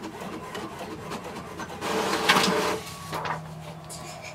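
HP OfficeJet 3830 inkjet all-in-one printing a page: mechanical whirring and rasping from the paper feed and print carriage, loudest about two seconds in, then a steady low hum near the end.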